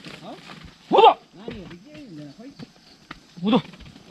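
A ploughman's short, loud shouted calls driving a yoke of oxen at the plough, one about a second in and another near the end, with quieter wordless calls between.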